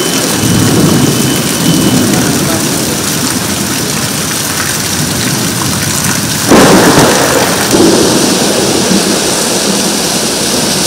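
Nor'wester thunderstorm: steady heavy rain with thunder rumbling low in the first couple of seconds, then a sudden loud thunderclap about six and a half seconds in that rolls on for a couple of seconds.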